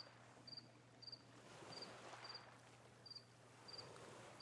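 A cricket chirping faintly and regularly, one short high chirp about every two-thirds of a second, over a low steady hum: night-time background ambience.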